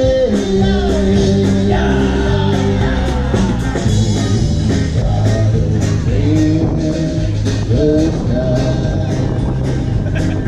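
Live band playing a rock song: a singer's held notes over electric guitar, bass and a steady drum beat.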